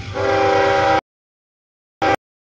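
A CSX GE ES44AH locomotive's multi-chime air horn blows a chord over the diesel's rumble as it sounds for a grade crossing. About halfway through, the sound cuts off abruptly into dead silence, and the horn returns right at the end.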